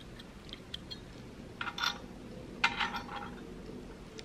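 Small cast iron toy stove and its little pots being handled: a few faint clicks, then two short scrapes about a second apart.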